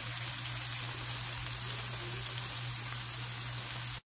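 Hot dogs and small tomatoes frying in oil in a nonstick pan: a steady sizzle flecked with small crackles, over a steady low hum.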